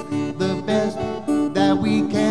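Acoustic guitar strummed in steady rhythm, chords ringing between strokes, in an instrumental passage of a folk song.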